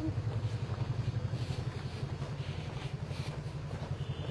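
A nearby motor vehicle engine running, a steady low rumble that flickers quickly in loudness.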